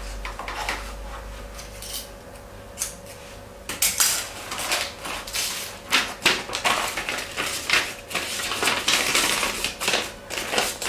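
Newsprint wrapping paper rustling and crinkling as it is handled and folded around a bouquet, with irregular crackles that become dense and louder from about four seconds in. A faint steady hum lies underneath.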